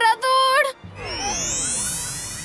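A young girl's voice sobbing for under a second, then a musical sound effect: a shimmering sweep of many pitches, some gliding up and some down, fading slowly.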